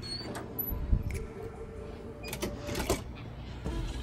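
A wooden interior door being unlatched and swung open, with a low thump about a second in and a few sharp clicks over the next two seconds.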